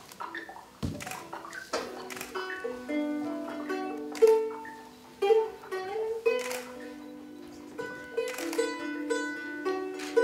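Live music on a plucked string instrument: single notes plucked and left ringing, overlapping into slow chords, with a few sharp knocks among them, the loudest about four seconds in.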